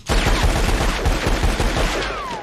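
Rapid cartoon gunfire from a pair of revolvers: a dense, unbroken volley of shots that starts abruptly and dies away at the end.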